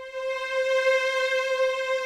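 A single held note on a sampled string ensemble (Spitfire Audio strings in Kontakt), swelling over about the first second and then holding steady. It is being pushed up with the modulation fader, which crossfades from soft to loud recordings, so the tone gets brighter as well as louder.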